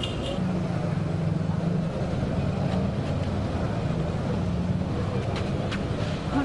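A steady low engine drone, with a few faint clicks.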